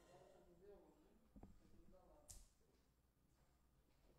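Near silence: room tone with faint low voices in the first two seconds and two small clicks, one about halfway through the second second and a sharper one just after two seconds, as cables and the keyboard stand are handled.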